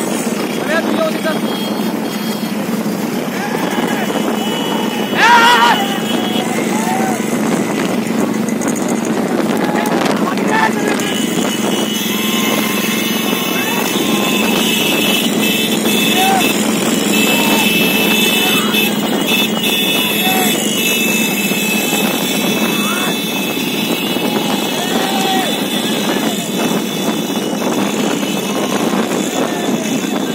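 Several motorcycle engines running together at riding speed around a racing horse cart, with men shouting over them and wind on the microphone. A brief shrill warble stands out about five seconds in.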